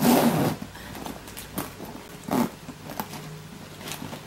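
Metal zipper of a Louis Vuitton Keepall 45 canvas travel bag being drawn closed. One loud zip comes at the start, followed by several shorter, quieter zips.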